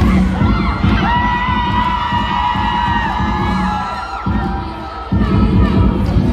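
Dance music with a heavy bass beat playing over a sports hall's PA, with the crowd cheering and children shrieking over it in the first half. The beat drops out twice, briefly, near the end.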